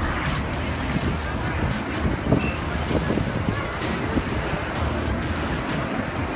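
Steady, dense outdoor din with a low rumble, with music playing underneath.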